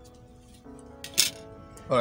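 Soft background music with steady held notes; about a second in, one brief sharp clack as a plastic set square is set down on the drawing board.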